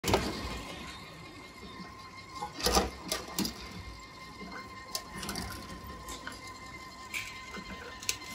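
Bottle-deposit reverse vending machine: a handful of short knocks and clinks as bottles are handled at its intake, over a steady high electrical tone.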